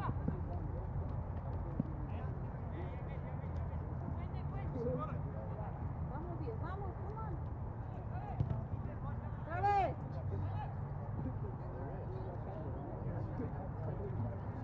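Scattered distant shouts and calls from players and spectators across a soccer field, with one louder call about ten seconds in, over a steady low rumble.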